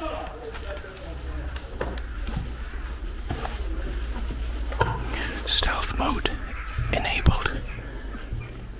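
Hushed whispering voices, with scattered sharp clicks and a low steady rumble underneath.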